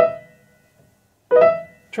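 Piano playing a lightning-fast grace-note flourish, B to D-sharp into a high E, twice about a second and a half apart; each time the notes ring briefly and die away.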